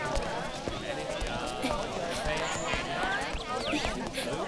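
Several voices chattering at once, with no clear words, over footsteps on a paved path.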